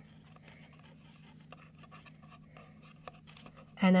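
Faint rustling and light ticking of fingers pressing adhesive foam pads onto a cardboard model, over a steady low hum. A woman's voice comes in near the end.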